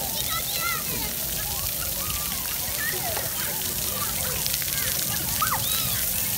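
Steady splashing hiss of ground-level fountain jets spraying onto a wet pebble-tiled floor, with many children's voices chattering and calling over it.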